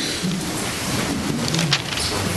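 A standing congregation sitting back down: many chairs scraping and people shuffling together as one steady noise, with a few sharp clicks near the end.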